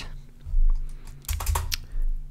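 Several keystrokes on a computer keyboard, with Enter pressed to open new lines of code; most of the clicks come about a second and a half in.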